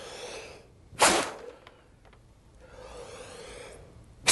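A short, sharp puff of breath about a second in, forced out by a diaphragm contraction against a sheet of newspaper to make it jump, with softer breathing around it.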